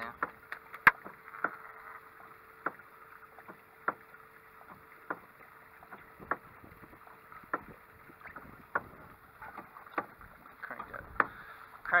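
Electric fish-attracting hull thumper knocking against the boat hull at an even pace, about one knock every 1.2 seconds, over a faint steady hum.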